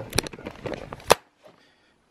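A few sharp clicks and knocks, the loudest about a second in, then the sound cuts off to silence.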